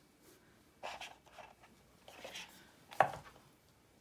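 Tarot cards being handled on a cloth-covered table: two soft sliding rustles, then one sharp tap about three seconds in.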